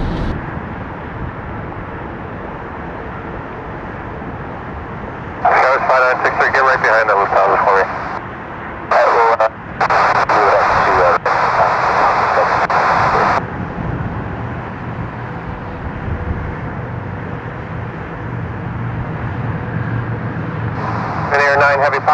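Air-band radio chatter: two transmissions of garbled speech that cut in and off abruptly, about five and nine seconds in, over a steady hiss and a low jet-engine rumble that grows stronger after the middle.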